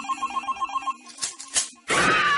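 A phone-ringtone-like electronic trill, rapid beeps about eight times a second, in a break in a song's backing music, over a low held tone. A few sharp clicks follow before the beeping stops.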